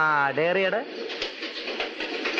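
A man's voice making two short, drawn-out, wordless sounds in the first second, then faint background noise.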